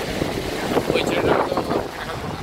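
Steady rush of wind buffeting the microphone over churning river water aboard a boat, with people's voices coming in partway through.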